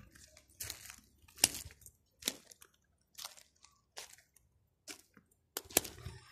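Footsteps crunching on gravel and dry debris, one crunch about every 0.8 seconds at a slow walking pace.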